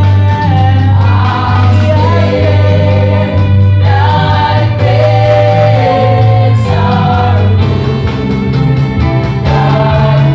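A worship team of mixed male and female voices singing a hymn together into microphones, over instrumental backing with a steady low bass line.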